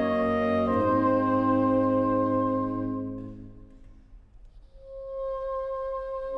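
Saxophone quartet of soprano, alto, tenor and baritone saxophones playing slow, sustained chords. The chord fades away about three and a half seconds in, and a single saxophone then enters alone on a held note near the end.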